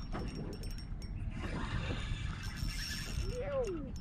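Spinning fishing reel working as a hooked fish is played, giving a run of irregular mechanical clicks.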